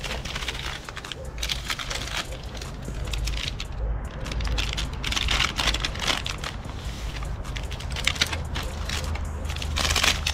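Small paper tobacco packets being handled, cut open with scissors and emptied, a dense run of irregular paper crinkling and crackling. A steady low rumble runs underneath.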